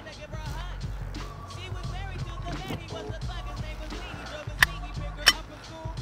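Background music with a steady bass line, over which two sharp clicks sound near the end, about two-thirds of a second apart: a semi-automatic pistol being handled.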